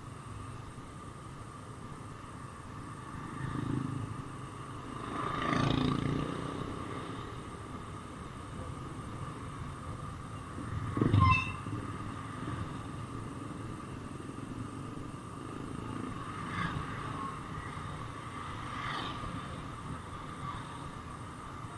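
Motorcycle engine running and street traffic heard while riding, a steady low rumble with several louder swells; the loudest is a short burst about halfway through.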